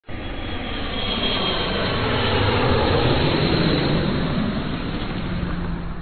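A rushing noise with no speech or tune, swelling a little toward the middle and fading away near the end.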